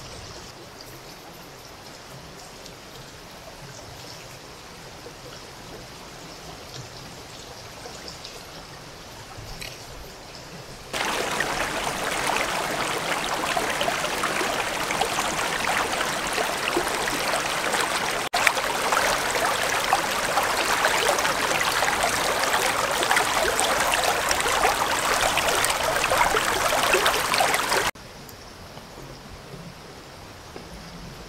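A shallow river running over stones: faint for the first third, then loud and close for most of the rest, dropping back to faint near the end.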